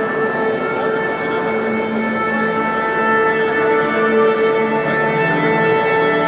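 Live classical music on bowed strings led by violin, playing a slow passage of long held notes that change pitch every second or two.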